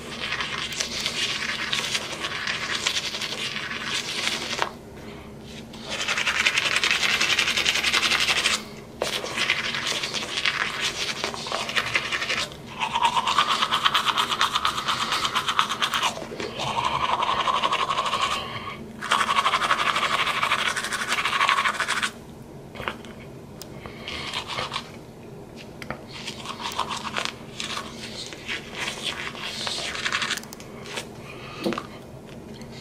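Manual toothbrush scrubbing teeth through a mouthful of toothpaste foam, in spells of a few seconds with short breaks between them. The brushing is softer and more broken up over the last several seconds.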